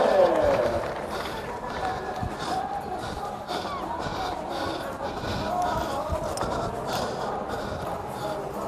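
Indistinct voices at a distance, with irregular soft knocks and rustles close to the microphone; a louder voice trails off in the first half-second.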